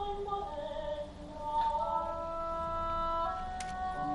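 A mezzo-soprano singing classical art song with harp accompaniment. The voice glides between pitches at first, then settles into held notes, and a few plucked harp notes sound near the end.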